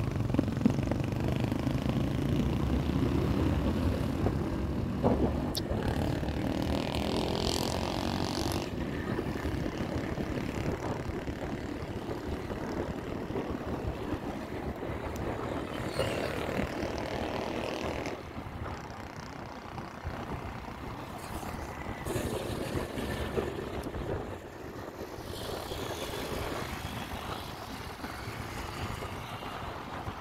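A motorcycle running steadily on the road, its engine drone mixed with wind and road noise, with other motorcycles and tricycles in traffic nearby. The sound swells a few times as traffic passes and is somewhat quieter in the second half.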